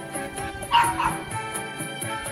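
Background music with a steady tune, cut through by two quick, high dog yips in close succession about three quarters of a second in.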